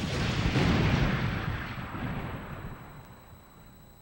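An explosion, like a bomb going off, its rumble dying away over about three seconds.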